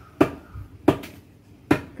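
Three sharp knocks about three-quarters of a second apart: a hammer tapping concrete blocks to seat them in mortar as a block wall is laid.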